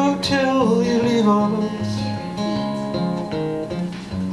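Steel-string acoustic guitar played between sung lines of a slow folk song, its picked and strummed notes changing about every half second. A held sung note slides down and trails off in the first second.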